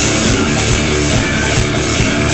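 Live rock band playing loud, with electric guitar over a drum kit and cymbals, heard from close to the stage.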